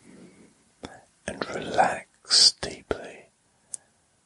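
Whispered speech only: a few soft, hushed phrases with short pauses between them.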